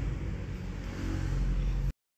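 Street traffic noise with a vehicle engine getting louder near the end, then cut off suddenly.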